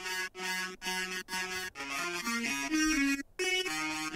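Synthesizer lead line from an electronic track playing back: a run of short, stepped notes, with a brief break a little past three seconds in.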